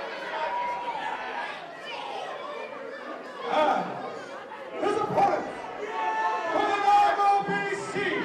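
A ring announcer's voice through the hall's PA system, echoing, with crowd chatter underneath; near the end he draws out a few long held words.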